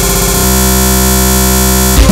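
A loud, harsh electronic buzzing tone held steady between bursts of electronic music, switching to a different held tone about half a second in.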